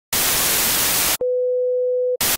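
Analogue television static hiss for about a second, then a sudden switch to a single steady test-pattern tone.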